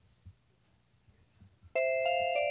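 A faint low thump, then near the end a bright bell-like chime sounds suddenly, two notes ringing together and held.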